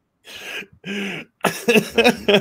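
A person clearing their throat in two short bursts. Voice sounds start up again about a second and a half in.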